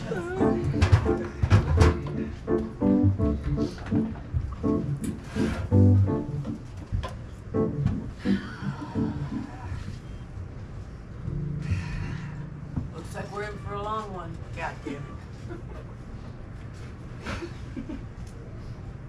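Metal chairs being picked up and set down on a wooden stage, knocking several times in the first few seconds, amid voices; after that, quieter voices and music-like pitched sound with a wavering tone near the end.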